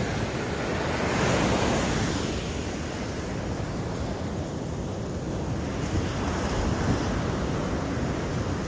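Ocean surf washing up on the beach in a steady rush, swelling a little about a second in, with wind on the phone's microphone.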